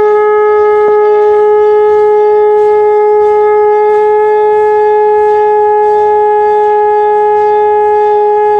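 A conch shell (shankh) blown in one long, unbroken, loud note, steady in pitch.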